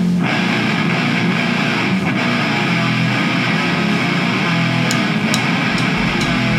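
Live rock band playing, with electric guitar out front over bass guitar and drums. A few sharp drum or cymbal hits come near the end.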